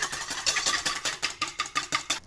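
Wire balloon whisk beating egg whites by hand in a red enamelware bowl, a rapid, even clatter of the wires striking the bowl's sides, with the bowl ringing faintly. This is the start of whipping the whites toward meringue.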